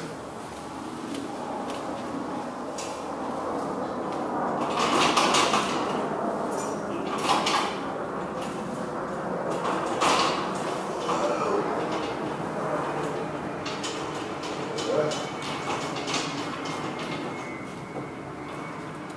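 Steel scaffolding creaking, rattling and knocking as a person climbs up its frame and stands on the platform, with several sharper clanks spread through.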